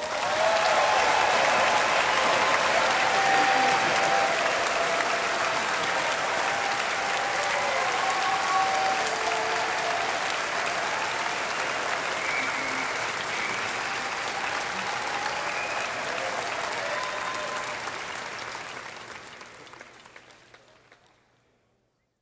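Large audience applauding, with scattered cheers and whoops; it fades out over the last few seconds.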